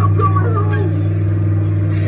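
Jolly Roger Stuart Little coin-operated kiddie ride in motion: a steady low motor hum, with the ride's own audio playing over it from its speaker.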